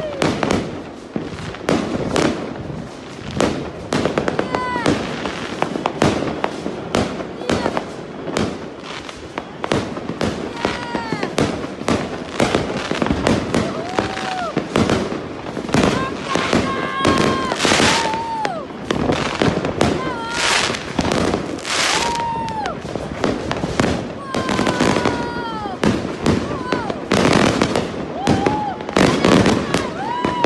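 Fireworks going off: a dense, continuous run of bangs and crackles, with voices calling out in short rising-and-falling shouts between them.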